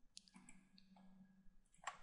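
Several faint computer mouse clicks against near silence.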